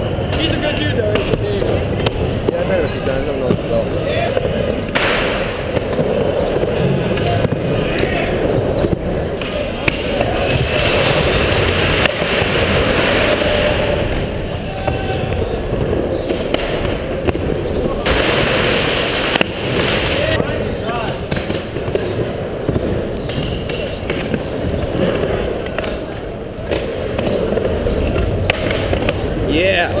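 Skateboards rolling on a mini ramp, with repeated knocks and clacks of board pops, landings and coping hits, over indistinct voices of onlookers.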